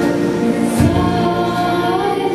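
Children's choir singing a Christmas carol into microphones, holding long sustained notes over an instrumental accompaniment; a low bass note comes in just under a second in.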